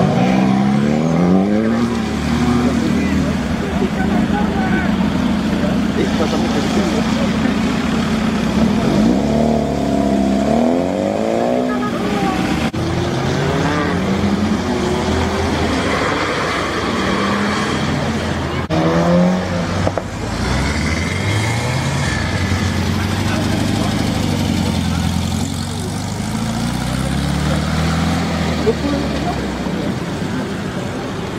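Tuned cars accelerating away one after another, their engines revving up through the gears in a series of rising pitch sweeps over a steady engine noise.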